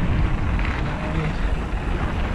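Steady low rumble of wind on an action camera's microphone, mixed with the sound of mountain-bike tyres rolling over a dirt trail on a fast descent.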